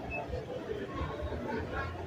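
Background chatter of people walking past, voices mixed with the general noise of a busy street.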